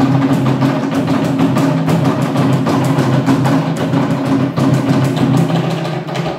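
Live dance music of fast drumming, with a steady low tone beneath the drum strokes that weakens about four and a half seconds in.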